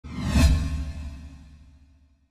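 Intro whoosh sound effect with a deep low boom and musical tones under it. It swells to a peak about half a second in, then fades away over the next second and a half.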